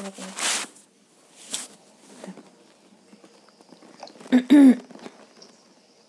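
A person's breathy, close-to-the-microphone sounds with a loud, brief voiced exclamation about four and a half seconds in.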